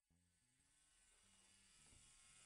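Near silence, with a very faint electric tattoo-machine buzz fading in over the second half.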